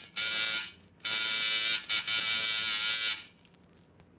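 Electric doorbell buzzer rung several times in a row: a short ring of about half a second, then a longer ring, then a ring of over a second that cuts off just past three seconds. It goes unanswered.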